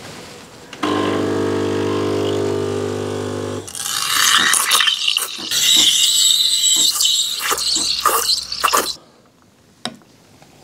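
De'Longhi espresso machine: its pump buzzes steadily for a few seconds as it pulls the shots, then the steam wand hisses and splutters in a jug of milk for about five seconds as it froths, cutting off about a second before the end.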